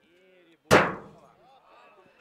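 A single loud, sharp thump about two-thirds of a second in, dying away over about half a second, with faint voices before it.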